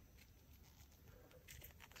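Near silence: room tone, with a few faint soft rustles near the end as the paper comic book is handled.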